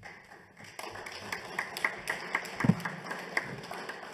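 Microphone handling noise at a lectern: a run of light, irregular taps and clicks, about three or four a second, with one low thump about two and a half seconds in.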